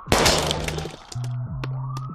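Animated sound effect of a marshmallow figure's head bursting: a sudden crash at the start, then scattered clicks and crackles over a low steady hum.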